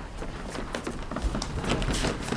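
Footsteps and a run of light knocks and taps on a stage floor as performers change places and a chair is picked up and moved.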